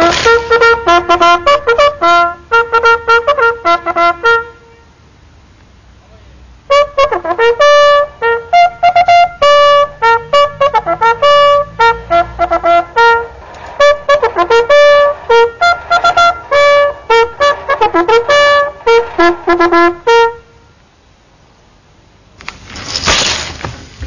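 Military bugle call played on a valveless brass bugle: quick, loud notes leaping between a few fixed pitches. A short opening phrase is followed, after a pause of about two seconds, by a long phrase that stops about two seconds before the end.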